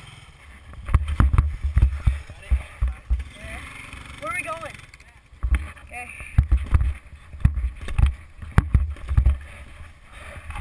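Wind rushing over a helmet-mounted action camera's microphone and a snowboard scraping and knocking over rutted, packed snow while it is towed, in loud uneven bursts that ease off briefly near the middle. A few short pitched squeaks or cries come in that quieter stretch.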